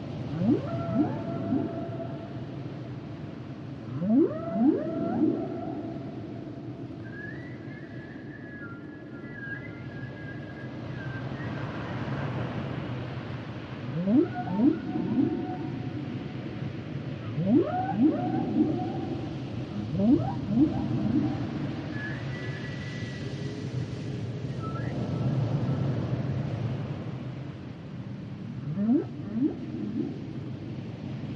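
Humpback whale song: repeated rising whoops that sweep up from low to mid pitch, often in quick pairs. A few higher, steadily held tones come in between. A steady low rumble of sea noise runs underneath.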